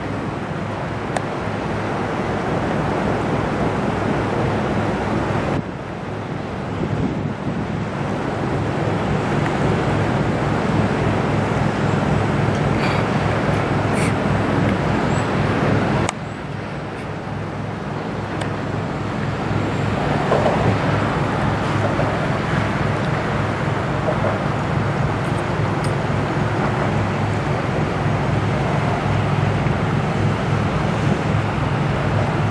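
Steady low engine drone and rumble from the 1,013 ft bulk carrier Paul R. Tregurtha as it passes close by. The sound drops abruptly twice, about six and about sixteen seconds in.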